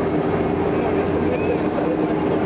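Steady fairground din: many voices in a crowd mixed with the even hum of ride machinery.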